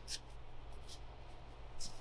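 Faint handling sounds, a few soft clicks and rubbing, as a rubber breather hose is pushed onto a kart carburetor's fitting, over a low steady hum.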